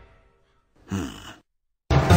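Music fading out, then about a second in a short breathy vocal sigh with a falling pitch, and music starting again suddenly near the end.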